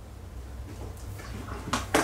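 Handling noise: two sharp clacks near the end, like a hard object such as a tablet being set down or knocked, over a low steady hum.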